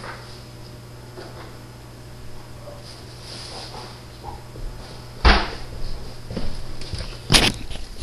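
Two sharp knocks about two seconds apart, with faint rustling and handling sounds before them, over a low steady hum.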